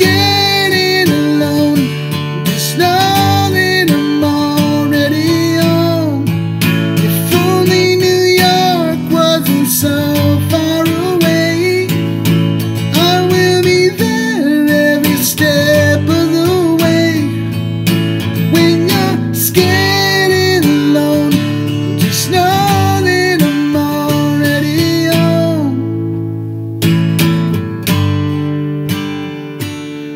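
Acoustic guitar strummed in chords, accompanying a man singing a ballad. The strumming thins out and gets softer near the end.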